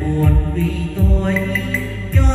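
Music played loud through a home sound system of tall column speakers and bass cabinets: a chant-like vocal melody over heavy, repeated bass thumps.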